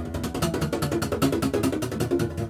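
Acoustic guitar strummed in a fast, even tremolo as a mock drum roll, the chord shifting as it goes.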